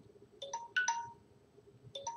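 A phone ringtone: a short phrase of four electronic chime notes, played twice about a second and a half apart.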